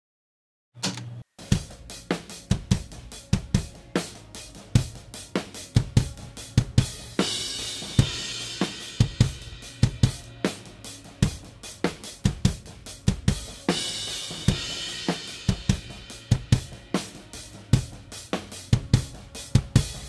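Multitracked live drum recording played back from the kick drum close mic and the overhead mics: a steady beat of kick hits with snare, hi-hat and cymbals, starting about a second in. The cymbal wash swells twice. In the later part the kick mic is delayed by a set number of samples to time-align it with the overheads.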